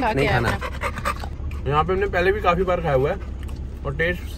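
An American Bully dog panting, its way of cooling off, over a steady low hum. A voice speaks for about a second and a half in the middle.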